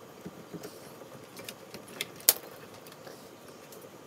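Light handling clicks and taps as a small plastic trigger clamp is fastened on a thin wooden strip and a steel rule is laid against it, with one sharp click a little past halfway.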